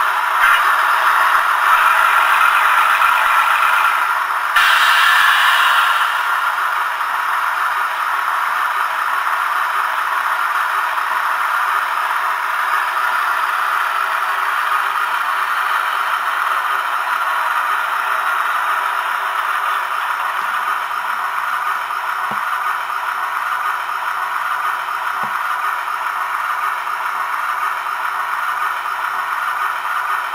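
A Class 50 diesel engine idling, as reproduced by a model locomotive's DCC sound decoder through its small onboard speaker: a steady, rattly running sound. A brief louder, hissier burst comes about four and a half seconds in.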